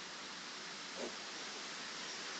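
Steady hiss of the recording's background noise, with a faint short sound about a second in.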